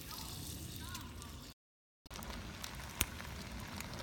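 Steady outdoor background noise with faint voices, broken about halfway through by a half-second dropout to dead silence where the recording was paused, then one sharp click.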